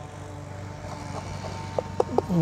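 Distant aircraft engine drone, steady and slowly growing louder.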